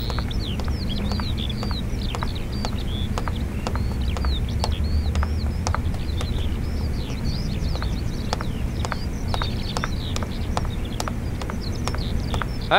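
Birds chirping steadily over a low outdoor hum, with sharp clicks of footsteps on pavement about twice a second.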